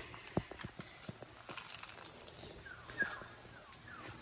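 Faint, sparse clicks and light crackles of a person moving on dry leaf litter, with a few short falling chirps about three seconds in.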